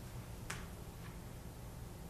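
Quiet room hum with one short, sharp click about a quarter of the way in and a fainter tick about a second in.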